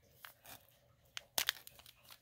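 Thin black plastic bag being pulled and torn open by hand, giving a few short, quiet crackles, the sharpest about one and a half seconds in.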